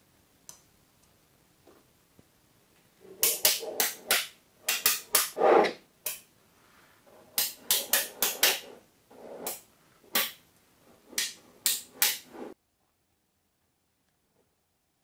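Small magnetic balls clacking and snapping together in quick clusters of sharp clicks. The clicking cuts off abruptly a second or so before the end.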